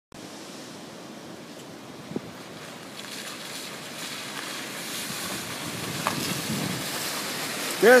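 A minivan pulling up a wet, puddled driveway: a steady hiss of tyres and engine that grows gradually louder as it approaches. A single sharp click about two seconds in.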